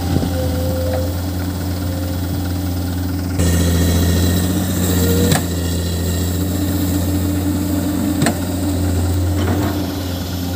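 Loaded dump truck's diesel engine idling steadily, its hum a little louder from about a third of the way in. A couple of single sharp clicks sound over it, about halfway through and again later.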